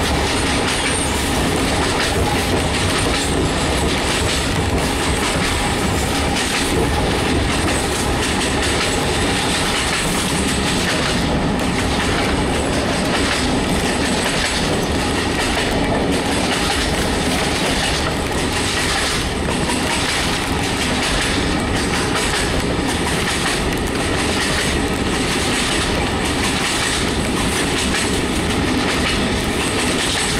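Regional passenger railcar running at speed, heard from inside the coach: a steady loud rumble of wheels and running gear, with repeated clicks of the wheels passing over rail joints.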